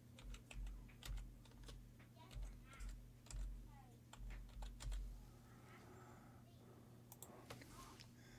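Quiet typing on a computer keyboard: an uneven run of keystrokes with soft low thuds through the first five seconds or so, then a few scattered clicks near the end.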